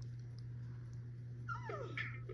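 A steady low hum, then near the end a short whining cry that falls steeply in pitch, like a dog whimpering.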